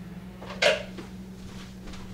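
A kitchen drawer shut with one short, sharp clack about two-thirds of a second in, while a utensil is fetched, over a steady low hum.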